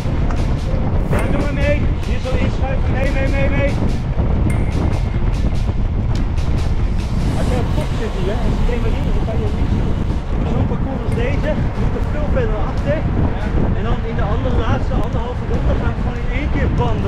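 Wind rushing over the microphone of a handlebar-mounted camera on a road bike riding at race speed in a bunch, a loud steady low rumble, with voices over it.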